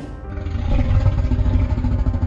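Background music over a low, rapidly fluttering engine-like rumble that starts about half a second in: a creature sound effect.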